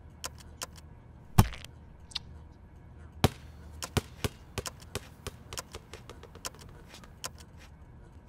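Irregular clicks of laptop keys being typed, several a second, over a low steady hum, with one heavy thump about a second and a half in.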